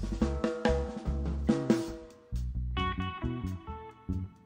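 Jazz trio playing live: a drum kit played with sticks, snare and bass drum hits, under electric bass and electric guitar notes, with a short pause a little past halfway before the guitar notes come in more clearly.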